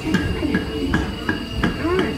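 Crickets chirping in a dark ride's scene soundtrack, short regular chirps about three a second over a steady background bed.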